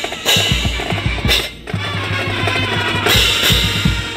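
Marching band playing: brass over a drumline, with bass drum hits and cymbal crashes. The music dips briefly about a second and a half in.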